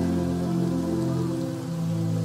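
Soft ambient background music, a steady held chord, with a rain sound running under it.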